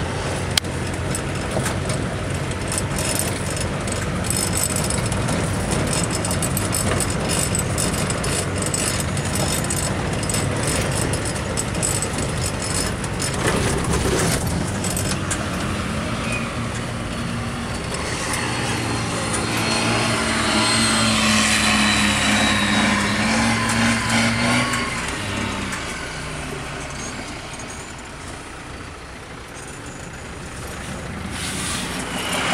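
Vehicle engine running while driving over a rough dirt track. About halfway through, a small tracked armoured vehicle of the CVR(T) type comes by: its steady engine hum and track noise grow loudest a little past the middle, then fade toward the end.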